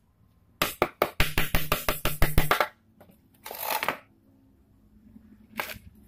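Fast run of sharp metal-on-metal knocks, about seven a second for some two seconds, from a homemade steel hammer striking nails in a wooden board, with a low ring under the blows. A short scraping rustle and a single brief knock follow.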